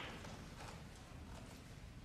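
Faint footsteps and a few light taps as a snooker player steps up to the table.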